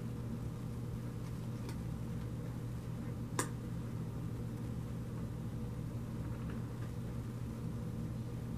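A steady low hum of background room noise, with tarot cards being handled and laid down on a velvet cloth: a faint click near two seconds in and one sharper click about three and a half seconds in.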